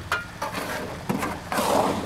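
Creek water and gravel washing through a small hand-built sluice box, with a short rush of noise in the last half second as a load goes in.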